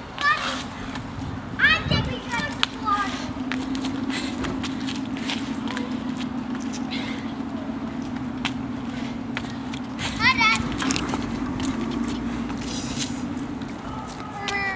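Children playing, with high-pitched shouts about two seconds in and again about ten seconds in, over a steady low hum and scattered light clicks.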